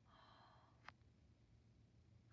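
Near silence with a woman's faint breath in, followed by a single small click just before a second in.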